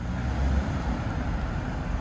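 Road traffic on a busy road: a steady low rumble of passing cars, strongest in the first half second.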